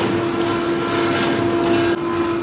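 Belt-driven electric cotton carding (fluffing) machine running steadily while raw cotton is fed into its rollers by hand: a constant hum over the noisy whirr of the spinning rollers and belts.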